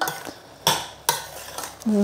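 Metal spoon stirring corn kernels and sliced mushrooms in a stainless steel pot, the spoon scraping and knocking against the pot's side in a few sharp strokes.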